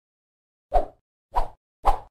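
Three short, sudden hits from an edited title animation, about half a second apart, each with a deep thump under it, coming out of dead silence just under a second in.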